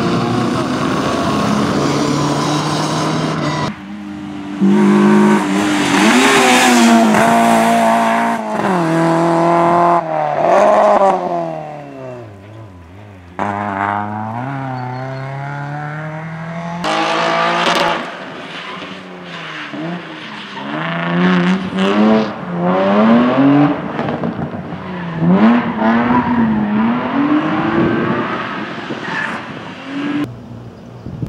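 Rally car engines revving hard on a stage, several cars in turn. The pitch climbs through each gear and drops at the shifts and when lifting off, with abrupt changes from one car to the next.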